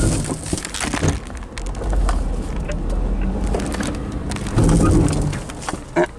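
Car cabin noise as the car brakes hard with its hood blown open against the windshield: sharp knocks at the start and about a second in, then a low road rumble, and a louder burst near the five-second mark.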